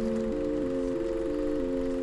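Soft background music: a held chord with a slow line of notes beneath it, changing pitch about every third of a second.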